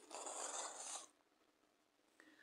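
A short scraping rustle, about a second long, of hands working cotton amigurumi yarn with a crochet hook, yarn and fingers rubbing.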